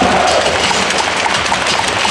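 Stadium crowd noise with public-address music, a dense, echoing wash of sound between the lineup announcements.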